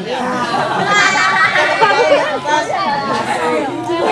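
Several people talking over one another, no single clear voice.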